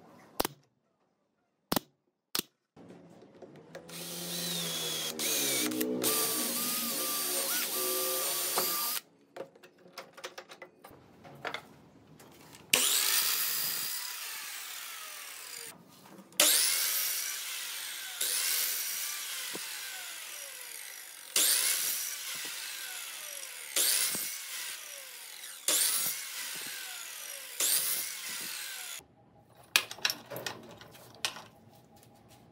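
A miter saw cutting through a bundle of thin wood strips about six times in the second half. Each cut starts suddenly and loud, and is followed by the blade winding down in falling pitch. Earlier, after a few clicks, a power tool runs steadily for about five seconds.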